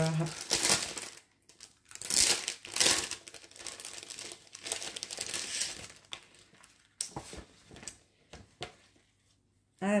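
Plastic blister packaging being torn open and crinkled by hand, loudest in the first few seconds, then thinning to a few scattered clicks and rustles.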